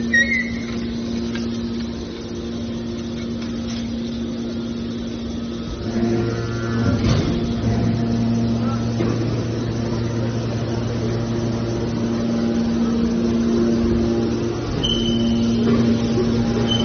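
Hydraulic scrap metal baler running: a steady mechanical hum from its electric-motor-driven hydraulic power unit, with a lower hum joining about six seconds in.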